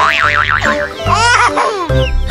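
Bouncy background music with cartoon sound effects: a wobbling, springy boing-like whistle in the first second, then quick sliding whistles about halfway through.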